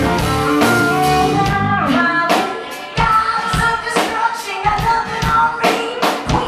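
Live rock band playing amplified electric guitar, bass and drum kit, with a woman's singing voice. The low end falls away about two seconds in, and the drums then come back in sharp hits.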